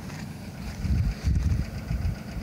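Wind buffeting the microphone: a gusty low rumble that swells about a second in.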